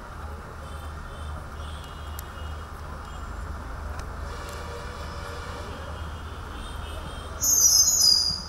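Hall room tone through a sound system: a steady low electrical hum with faint distant voices. Near the end, a sudden short, loud, high-pitched hissing screech lasts under a second.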